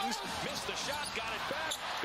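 Arena sound of a live basketball game: many short, high sneaker squeaks on the hardwood court and the ball being dribbled, over crowd noise.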